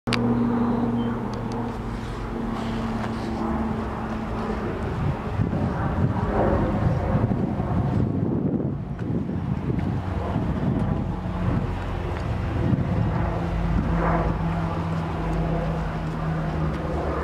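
Wind buffeting the microphone over a steady low engine hum from a vehicle.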